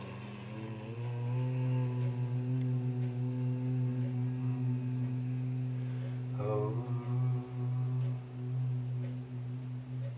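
A man chanting one long, sustained low tone in the manner of a meditative mantra, holding the same pitch with only a brief catch about six seconds in.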